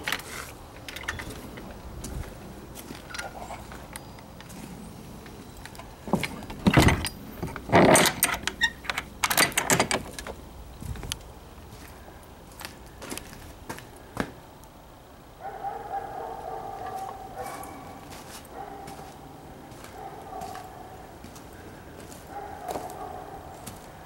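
A run of knocks and clatter, loudest in the middle, followed by a steady hum with a faint held tone.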